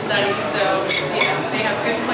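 Cutlery clinking against plates and dishes, a few sharp clinks about a second in, over voices talking in a dining room.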